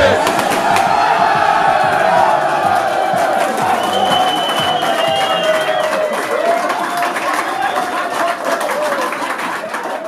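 A crowd of men cheering and shouting together, some voices holding long wavering notes over the din. It fades gradually toward the end.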